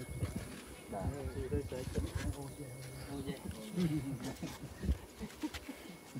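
People talking in conversation, with a few short knocks.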